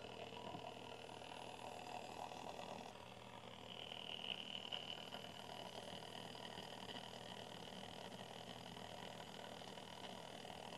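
Antique Sunbeam Mixmaster stand mixer running faintly and steadily at low speed, its beaters turning through the dry ingredients and coffee of a cake batter.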